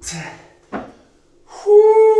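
A sharp breath out and a single short knock of an iron kettlebell set down on a rubber gym floor, then a man's loud held shout, falling in pitch as it ends, after the effort of the set.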